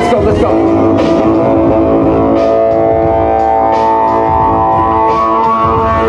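Live band playing an instrumental passage: saxophone holding long notes over upright bass, keyboard and regular drum hits, with more held notes joining about halfway through.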